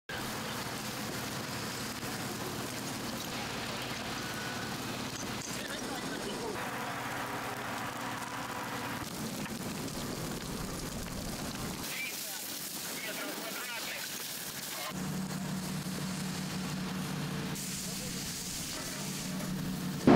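Field sound of a large outdoor fire of burning tyres and ship fenders: a steady rushing noise that changes in character at each cut in the footage.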